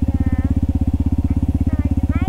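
Yamaha WR155R's single-cylinder four-stroke engine running at a steady speed while riding, a rapid, even pulse that doesn't rise or fall.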